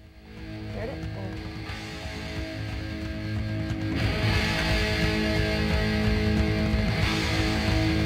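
Opening theme music for the show, rock with guitar, fading in at the start and getting louder about four seconds in.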